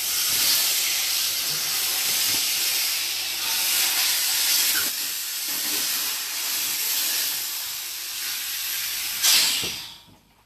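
Compressed air hissing steadily from a Quik-Shot pneumatic inversion unit while it drives a calibration tube into a cured-in-place pipe liner. Near the end there is a short louder burst of air, then the hiss cuts off suddenly.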